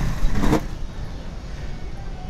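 Inline skate wheels (85A urethane) rolling over brick pavers, a steady low rumble, with a short louder sound about half a second in.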